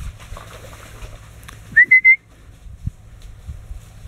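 A single short whistle about halfway through, sliding up into one held high note, given to a hunting dog searching cover for a shot pigeon.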